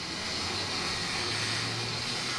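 Aerosol spray-paint can hissing steadily as paint is sprayed onto a cinder-block wall, with a faint low hum underneath.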